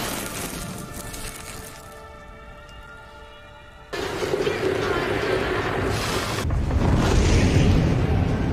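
Dramatic film score with sound effects. A sustained tone fades down, then about four seconds in a sudden loud swell comes in and carries on.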